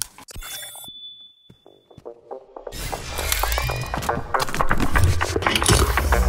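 A thin, steady high tone held for under two seconds over near-quiet, then a soundtrack of music with heavy bass comes in loudly about three seconds in and builds.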